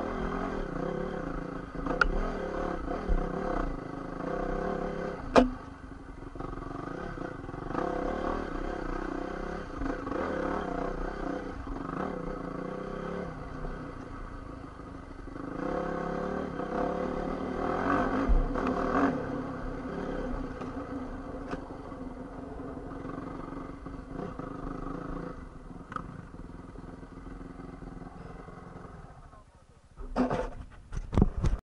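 Single-cylinder four-stroke engine of a Honda CRF450 dirt bike running, its pitch rising and falling with the throttle, with a sharp knock about five seconds in. It settles lower and quieter near the end.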